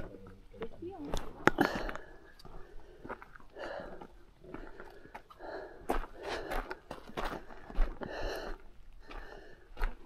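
A hiker's footsteps scuffing and crunching irregularly over rock and a gravelly dirt trail.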